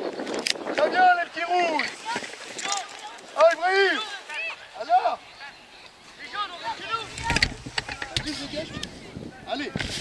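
Children and coaches shouting and calling out in a youth football match: short raised calls every second or so, with a brief low rumble about seven seconds in.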